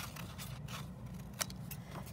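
Scissors snipping through a sheet of paper while rounding off its corners, with a few short crisp cuts, the sharpest a little past halfway.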